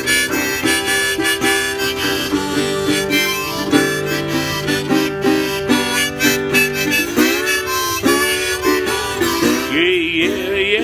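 Blues harmonica played in a neck rack, wailing and bending notes over a steel-bodied resonator guitar played with a slide, in a Delta-blues instrumental break.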